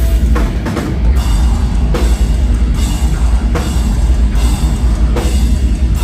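Deathcore band playing live at full volume: distorted guitars, bass and drum kit, with heavy accented hits landing a little under a second apart.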